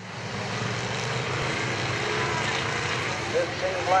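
A field of sport mod dirt-track race cars running their engines together as they circle the track, a steady blended engine noise. An announcer's voice comes in near the end.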